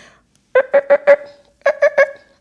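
A woman's voice making a playful sound effect for switching her 'listening ears' on: two quick runs of short, same-pitched beeps, about five and then four.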